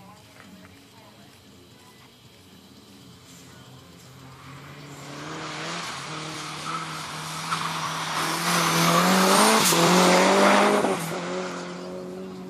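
A sprint car accelerating hard down the course toward and past the listener, its engine pitch climbing in steps as it shifts up. Its tyres hiss on the wet asphalt. It is loudest about ten seconds in as it goes by, then drops away quickly.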